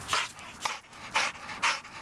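A pit bull panting with a tennis ball held in its mouth, about two quick breaths a second after chasing the ball.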